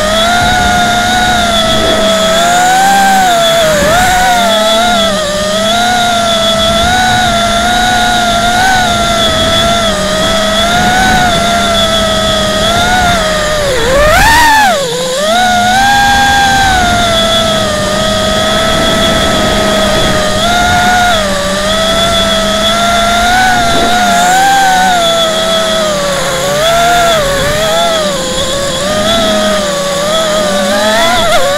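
Small FPV quadcopter's electric motors and propellers whining loudly, the pitch wavering up and down with the throttle. About halfway through the pitch swoops sharply up, drops, then climbs back.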